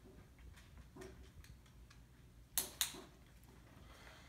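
Handheld dog-training clicker pressed and released, two sharp clicks a fraction of a second apart about two and a half seconds in, marking the instant the puppy touches the treat by the flag. Before it, faint light ticks of a dog's claws on a hardwood floor.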